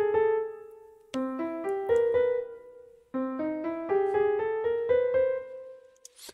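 Piano playback from MuseScore notation software: short phrases of quickly stepping notes climbing upward, each ending on a held note that fades away. New phrases begin about a second in and about three seconds in. It is the piano parts alone, with no percussion or bass.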